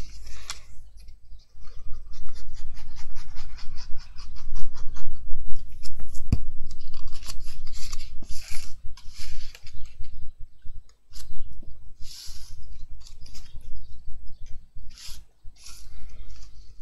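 Cardstock being handled and pressed down on a hard desk, rubbing and scraping, with a quick run of small clicks in the first few seconds and several louder rustles of card later on.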